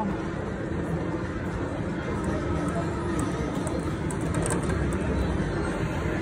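Steady casino-floor din: an even background of indistinct voices and machine noise, with no clear tune or chimes from the slot machine.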